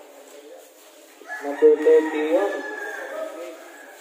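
A rooster crowing once: one drawn-out call of about two seconds, starting a little over a second in.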